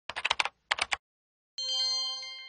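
Two quick runs of computer-keyboard typing clicks as text is typed in a web promo animation, then, about a second and a half in, a bright bell-like chime that rings on and starts to fade.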